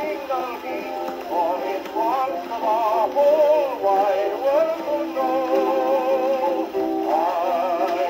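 A 1925 Grey Gull 78 rpm shellac record playing on a phonograph: a wavering melody over steady accompaniment, thin and boxy with almost no bass.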